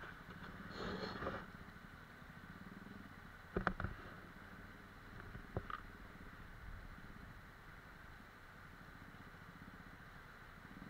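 A distant motorcycle engine running as the bike rides up a shallow, rocky stream, heard faintly over the steady rush of the stream water. There is a swell about a second in and a few sharp knocks a few seconds later.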